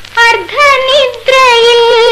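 A woman's high singing voice in a 1970s Malayalam film song, sung with vibrato in ornamented phrases that break briefly a little over a second in and then settle into a long held note.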